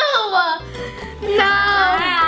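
A boy's high-pitched, sing-song vocalizing over light background music. A falling note comes first, then another note is held from about halfway through.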